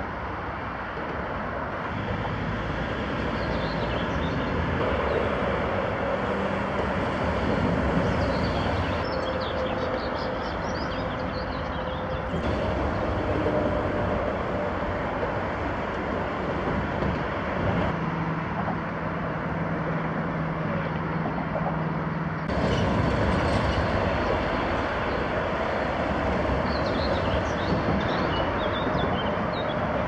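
Steady rumble of road traffic, with engine tones that come and go as heavy vehicles pass.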